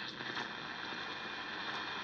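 Philco Model 75 tube radio giving a steady hiss of static from its speaker, with no station audible.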